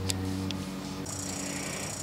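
A small electric shop motor running with a steady hum. The low part of the hum drops away about half a second in, and a faint high whine comes in about a second in.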